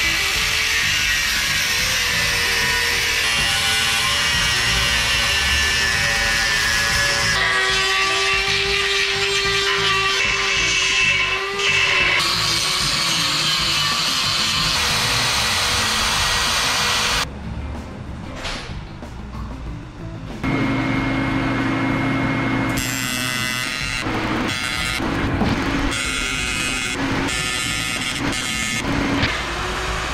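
Hand-held power grinders working an aluminium heat-exchanger housing: an angle grinder with an abrasive disc and then a die grinder, with a steady whining grind for about the first half and short chopped bursts later. Background music plays under it.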